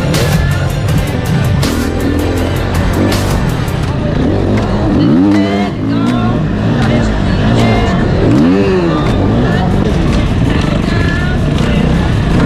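Enduro motorcycle engine revving up and down in quick repeated bursts as the bike is ridden over dirt and obstacles.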